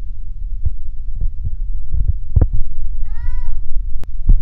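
Handling noise: a low rumble with several soft knocks as the cardboard box and the bag's strap are handled. About three seconds in comes one short, high child's vocal squeal that rises and falls.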